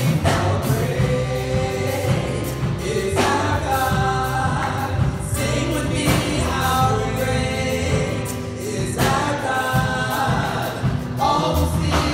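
Gospel praise group singing a worship song into microphones over instrumental backing with a bass line, in sung phrases of about three seconds each.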